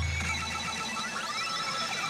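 Electronic sound effects from an e Hana no Keiji Retsu pachinko machine during a bonus add-on effect. A deep boom fades out over the first second, and rising sweep tones follow over a bed of steady electronic tones.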